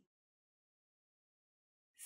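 Near silence: a gap of dead air with no sound at all, left for the learner to repeat a word.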